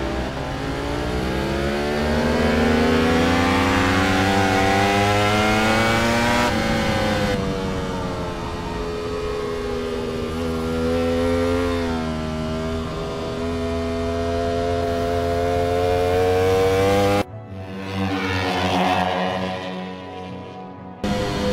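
Ducati sport motorcycle engines revving hard on a race track. The pitch climbs for several seconds as the bikes accelerate, drops as they slow for a corner, then climbs again. About seventeen seconds in, the engine sound cuts off abruptly and a quieter, different sound takes its place.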